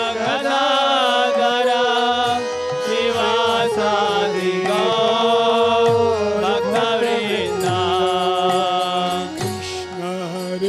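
Kirtan: a harmonium holding sustained chords under group chanting of a devotional mantra, with a mridanga drum keeping a steady beat.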